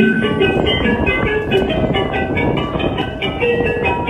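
Background music: a busy melody of quick, short struck or plucked notes.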